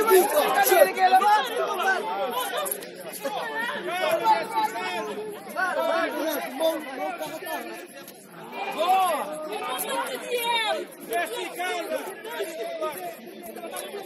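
Several distant voices of football players talking and calling to each other across the pitch, overlapping and without clear words.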